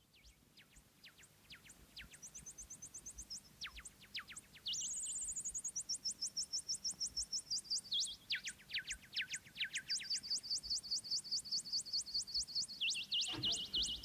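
Electronic music intro: a synthesizer plays rapidly repeated, chirp-like downward sweeps that fade in and grow louder, their pitch range shifting up and down in steps. Lower instruments enter near the end.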